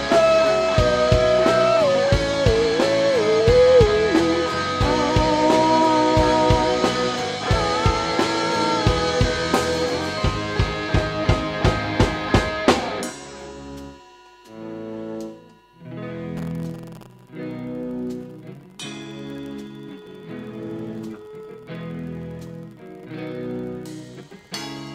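Live rock band playing: a bending electric guitar lead over a full drum kit and bass, with a run of evenly spaced accented drum hits building up. It then drops suddenly about halfway into a quieter passage of spaced guitar chords with sparse drums.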